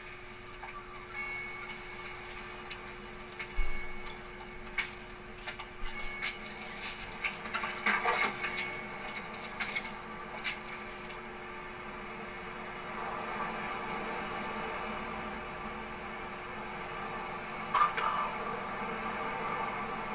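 A television's sound heard across a small room during a quiet, wordless passage of a film: a faint soundtrack under a steady hum, with scattered small clicks.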